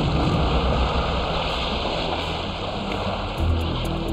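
Choppy sea water splashing and rushing steadily, with low background music underneath.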